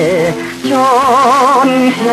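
Mid-1950s Korean popular song recording with guitar-led band accompaniment: a melody line with wide vibrato over sustained lower notes, with a brief dip in level about half a second in.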